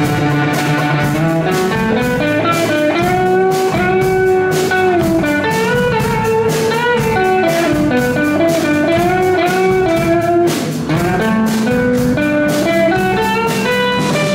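Live rock band playing: an electric guitar carries a melodic lead line with stepped and bent notes over drums and bass.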